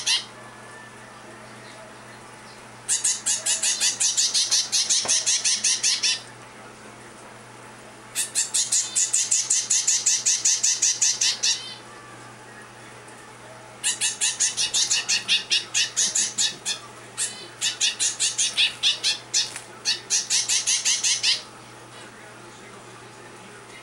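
A zebra finch fledgling giving food-begging calls: fast runs of shrill, squawky cries, several a second, in four bursts a few seconds long with short pauses between. This is a hungry hand-reared chick begging while it takes formula from a feeding syringe.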